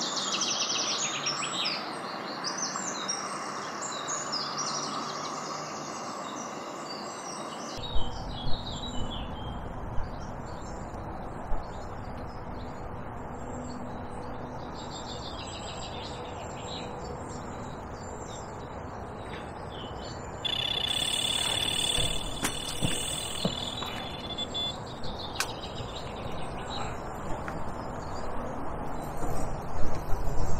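Small birds chirping and singing, with wind rumbling on the microphone from about eight seconds in and a few sharp knocks. A steady high trill joins for a few seconds about two-thirds of the way through.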